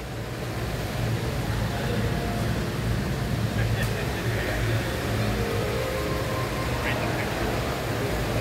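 Steady background hubbub of a large indoor concourse: faint distant voices over a continuous low rumble.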